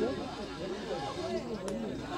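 Faint background chatter of several people talking, with a single sharp click near the end.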